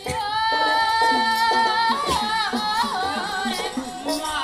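Woman singing a folk song in a high voice: one long held note for about two seconds, then the melody moves up and down. Quick plucked notes of a string instrument accompany her.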